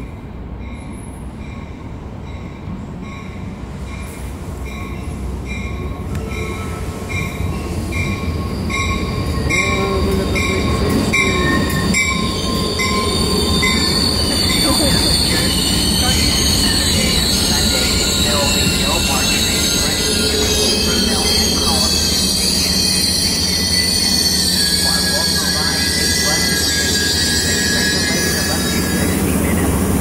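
Caltrain commuter train pulling into the station: a rumble that builds over the first dozen seconds while a bell rings at an even pace, then high-pitched wheel and brake squeal from the middle onward as the train slows.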